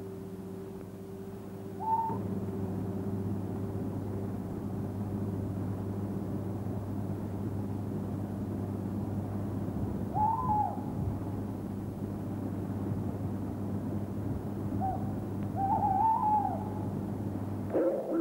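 Steady low electrical hum under three short hooting calls, like an owl's, about two, ten and sixteen seconds in. The last call is a run of several notes.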